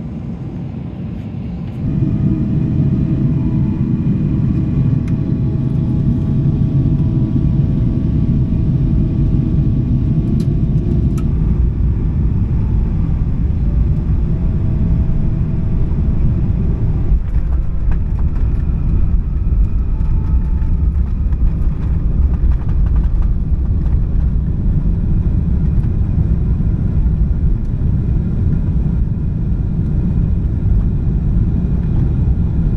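Boeing 777-300ER heard from inside the cabin on approach and landing: a loud, steady jet drone with a few steady whining tones over it. About halfway through it turns into a deeper rumble as the airliner rolls down the runway with its spoilers up.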